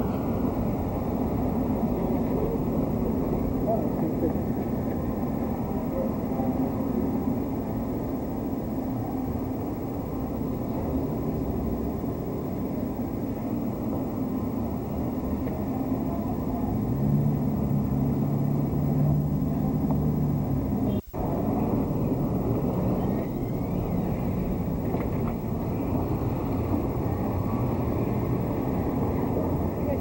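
Street ambience: a steady mix of town traffic and distant voices. A low steady tone joins for a few seconds past the middle, and the sound drops out briefly just after it.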